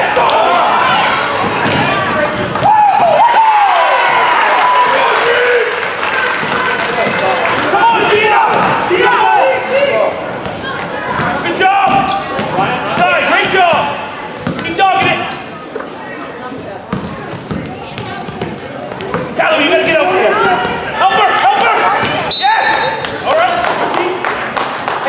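A basketball dribbled on a hardwood gym floor during play, the bounces mixed with shouting voices throughout.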